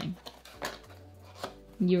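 A few faint light clinks and knocks as a glass cognac bottle and its cardboard box are handled, over quiet room tone. A voice starts near the end.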